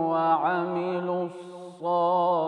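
A male Quran reciter chanting in melodic tajwid style, holding a long, ornamented note that bends in pitch about half a second in. He breaks off briefly about a second and a half in, then resumes just before the end.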